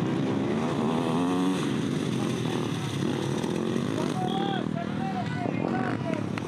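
Dirt bike engines running and revving as riders pass, the pitch climbing about a second in.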